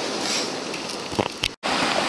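Steady wash of surf and wind on a rocky beach, with a few faint clicks just after a second in and a brief total dropout about one and a half seconds in.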